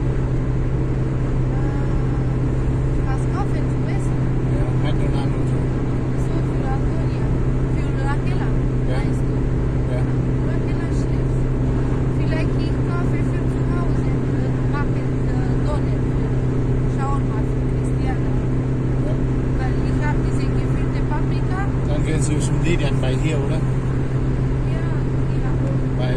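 Car cabin at motorway speed: a steady drone of engine and tyre-on-road noise with a strong low hum. Faint voices sit underneath.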